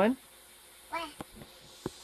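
A young child's brief voice sound about a second in, then a few sharp clicks, with quiet room tone between.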